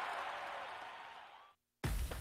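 Crowd noise fading out over about a second and a half, then a moment of dead silence.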